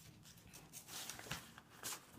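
Faint rustling and a few light ticks of sheets of scrapbook paper being handled and turned over.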